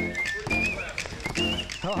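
Basketballs being dribbled, bouncing in a rough rhythm on a wooden gym floor, under an upbeat song with a singer.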